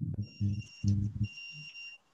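A steady high-pitched electronic tone with a fainter tone above it, typical of an electronic whine on a video-call audio line. It cuts out about half a second in and returns a little past the middle, over short low muffled pulses.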